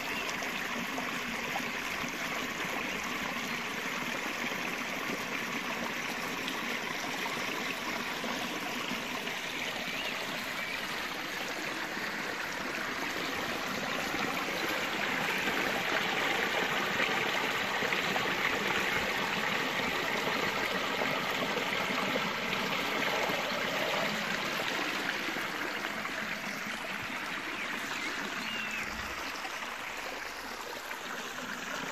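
Running water: a small stream pouring over a low mossy weir into a pool, a steady splashing rush that grows louder in the middle.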